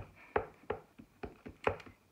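Clear acrylic stamp block tapped again and again onto a StazOn ink pad to ink the mounted rubber stamps: a quick run of short knocks, about four a second.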